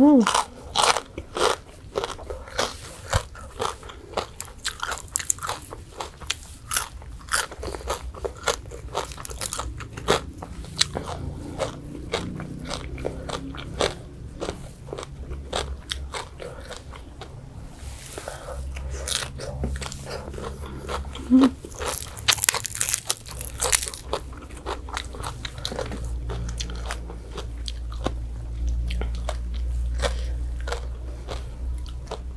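Close-miked eating of a som tam meal with crispy fried pork: repeated sharp crunching bites and chewing. The crunches are densest and loudest at the start and again about two thirds of the way in.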